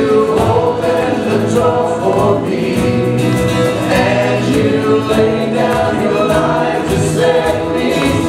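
A live contemporary worship band playing a song: a woman and a man singing, with acoustic guitar, keyboard and a steady drum beat.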